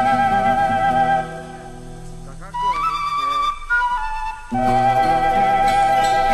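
Background music with a flute melody: a long wavering held note, a quieter stretch, then a short climbing run of higher notes, and from about halfway on another long held note over a low accompaniment.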